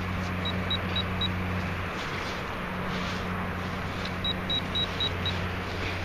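Metal-detecting electronics beeping in two short runs of rapid high pips, about four a second, as a target is located in the dug soil, over a steady low hum. A gloved hand rustles through loose earth and grass.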